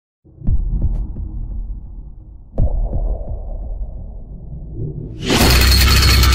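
Cinematic intro sound effects: two deep booming hits, each trailing off into a low rumble, then a sudden loud, harsh crash of noise about five seconds in that keeps going.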